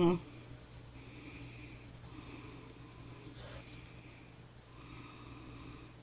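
Coloured pencil rubbing on the paper of a colouring book in faint, scratchy strokes, each lasting a second or so.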